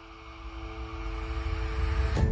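Riser sound effect of an animated logo intro: a whooshing noise swell that builds steadily in loudness over two held low tones.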